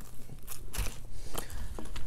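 A nylon first aid pouch being handled as its hook-and-loop (Velcro) flap is pulled open: a few short crackles and clicks and one soft knock.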